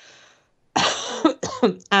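A woman coughs once, about three quarters of a second in, after a faint breath, and her speech resumes just after.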